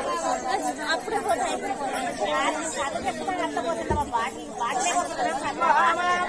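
Several people talking over one another, with one short low thump about four seconds in.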